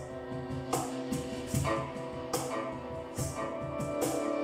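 Live instrumental music: a guitar playing over held, ringing notes, with a soft, bright percussive stroke about once every 0.8 seconds keeping time.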